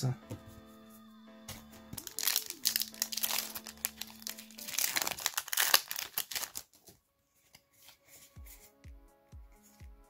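Foil Yu-Gi-Oh booster pack crinkling and being torn open, a run of crackling rustles from about a second and a half in until past the middle. Faint background music lies underneath.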